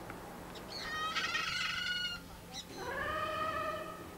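A young goat bleating twice: a call about a second in, then a longer bleat near the end that starts with a rising pitch.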